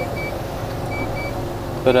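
Steady low rumble of a tipper lorry's diesel engine heard inside the cab as it crawls along at low speed, with faint pairs of short high beeps from a reversing alarm about once a second.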